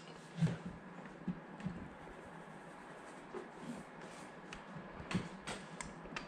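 Faint scattered taps and knocks from handling a wooden TV wall panel, a few spread through and a small cluster near the end, over low room noise.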